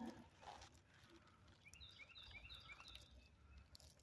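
Near silence, with a faint bird call in the middle: a quick run of about five short, repeated high chirps.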